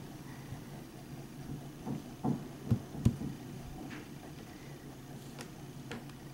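Handling noise: a few soft knocks between about two and three seconds in, over a faint steady low hum.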